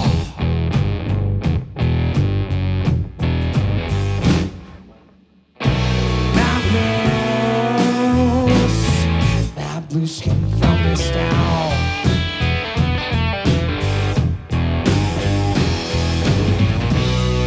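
Blues-rock trio playing an instrumental passage on electric guitar, electric bass and drum kit. About four seconds in the band stops and the sound dies away for about a second, then all come back in together.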